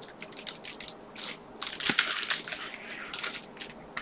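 Foil Pokémon booster pack wrappers crinkling and crackling irregularly as a handful of packs is shuffled in the hands, a little louder about halfway through.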